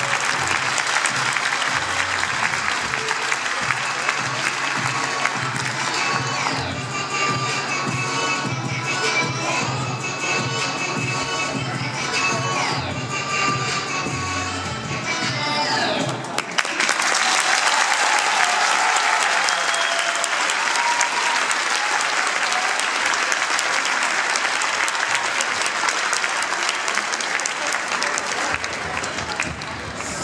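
Recorded music with a steady beat plays for about the first half, then stops suddenly, and an audience applauds steadily for the rest.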